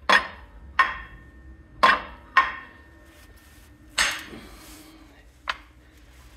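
A 3/4-inch 6061 aluminium adapter plate knocking against the engine block as it is pushed onto the locating dowels: six sharp metallic knocks at uneven intervals, the first few with a short ring.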